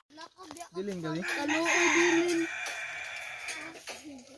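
A rooster crowing once: a long call that starts under a second in, holds, and trails off before the end.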